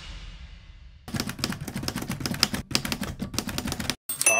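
A music sting fading out, then about three seconds of rapid typewriter key strikes: a typing sound effect accompanying typewriter-style title text.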